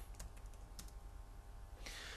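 Faint computer keyboard typing: a few scattered keystroke clicks over a faint steady hum.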